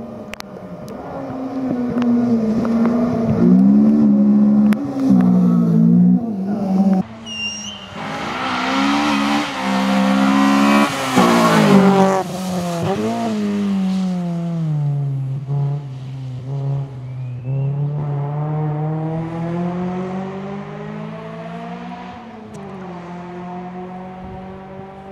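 Honda Civic rally car's four-cylinder engine revving hard through a series of gear changes, its pitch climbing and dropping with each shift, loudest as the car passes close in the middle. Later the engine note falls, then rises again in a long steady climb.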